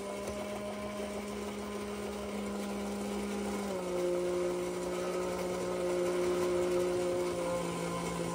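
The small battery-powered electric motor and gear train of a 1950s W Toys 'Fishing Bears' tin savings bank running steadily as the fisherman bear lowers his rod. The hum steps down slightly in pitch about halfway through.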